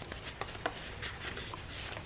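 Faint rustling of paper and card, with a few light ticks, as fingers pull tags and cards out of a paper pocket in a handmade journal.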